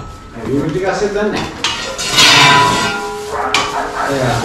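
Clattering and rustling from objects being shifted and prodded, in irregular bursts with a couple of sharp knocks, the longest burst about two seconds in.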